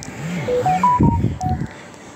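A phone sounds a short run of clear electronic tones that step up in pitch and then back down, with low sounds beneath.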